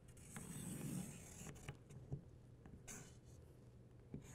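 Felt-tip marker drawn along paper, tracing an outline: faint scratching strokes with a few small ticks.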